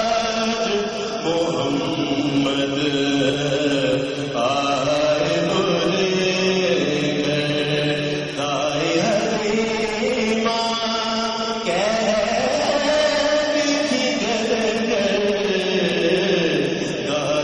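Male voice singing an Urdu naat in long held notes that glide from one pitch to the next.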